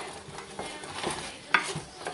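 Wooden spoon stirring hot brown-sugar praline syrup, cooked to soft-ball stage, in a metal saucepan: soft scraping with a sharper knock of spoon on pan about one and a half seconds in.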